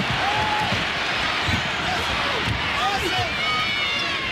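Arena crowd noise at a college basketball game, with a basketball being dribbled on the hardwood court and short high squeaks in the second half.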